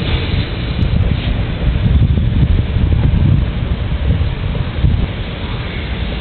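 Wind buffeting the camera's microphone: a steady, loud low rumble with a rushing haze above it.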